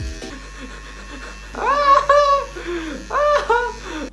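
Electric hair clippers buzzing steadily against hair, with two high-pitched squealing laughs about two seconds and three seconds in.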